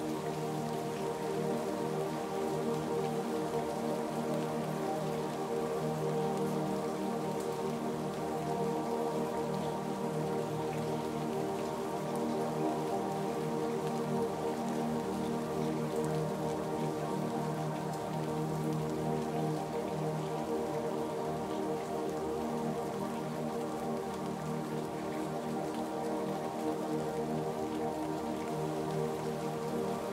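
Steady rainfall mixed with slow ambient music of long, held tones.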